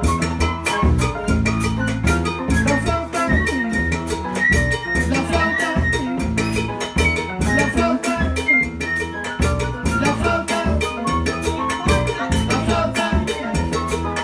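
Live salsa band playing an instrumental passage: a steady, dense percussion groove over a stepping bass line, with a high melodic line riding on top.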